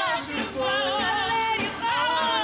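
Gospel praise team singing, with women's voices leading in long held phrases with wide vibrato. Short breaks between phrases come about half a second in and near the end.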